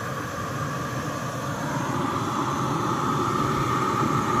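Steady hiss-and-roar of a knockoff Jetboil butane canister stove heating a pot of water, growing slightly louder as the water nears the boil.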